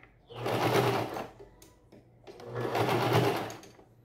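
Domestic electric sewing machine stitching through layered fabric in two short runs of about a second each, with a pause of about a second between them.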